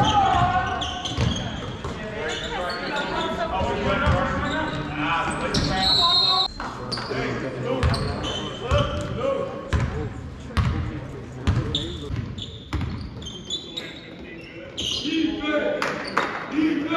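A basketball bouncing on a hardwood gym floor, with sharp knocks throughout, over indistinct voices of players and spectators echoing in a large gym. A short high-pitched tone sounds about six seconds in.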